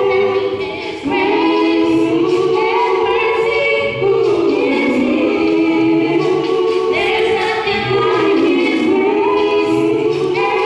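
Mixed male and female vocal group singing a cappella gospel in harmony through microphones. The sustained chords break briefly twice between phrases.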